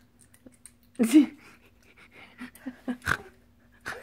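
Laughter: a loud breathy burst about a second in, followed by a string of short breathy laughs, with one short sharp sound just after three seconds. A faint steady hum runs underneath.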